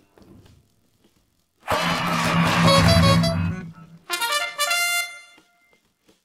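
Isolated instrumental stem of a pop song, mostly silent. A loud held chord comes in a little under two seconds in and lasts about two seconds, then two short bright stabs follow.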